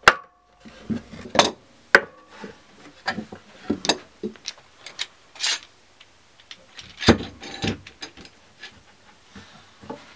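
Bar clamps being fitted and tightened across a panel of wooden boards: irregular knocks, clicks and scrapes of the clamp bars and jaws against the wood, with a short metallic ring just after the start.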